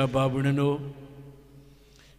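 A priest's voice intoning a prayer at a steady pitch into a microphone, trailing off about a second in and fading out in the church's reverberation.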